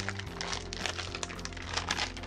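Plastic candy packaging crinkling and crackling in quick irregular clicks as it is worked at by hand, over background music with steady held low notes.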